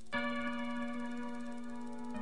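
Instrumental synthesizer music: a bright, bell-like synth chord struck just after the start and held over a steady sustained low note.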